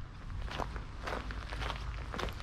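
Footsteps on a gravel path, several short irregular steps.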